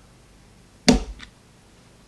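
One sharp metallic click about a second in, with a faint second tick just after: the hammer strut of a Colt Mustang .380 pistol snapping onto the hammer as it is pushed down with a screwdriver, connecting the two parts.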